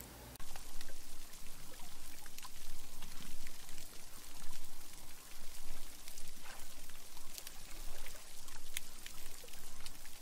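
Underwater recording of a healthy reef: a dense, steady crackle of many small clicks and pops from reef life, starting about half a second in.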